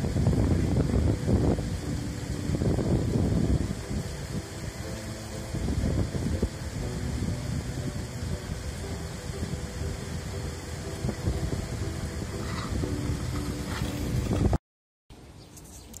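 Wind rumbling on the camera microphone outdoors, heaviest in the first few seconds, with faint steady musical tones underneath. The sound drops out briefly near the end.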